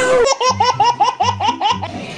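A man laughing hard and high-pitched: a rapid run of about eight 'ha' bursts, about five a second, over background music with a low bass line.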